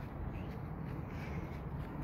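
Steady low rumble of outdoor background noise, with no distinct sound standing out.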